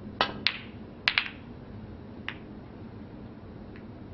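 Snooker balls clicking: a sharp click of the cue striking the cue ball, then about a second in a quick cluster of clicks as the cue ball runs into the pack of reds. Two fainter single ball clicks follow.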